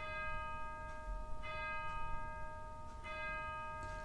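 A bell struck three times at the same pitch, about a second and a half apart, each stroke ringing on until the next.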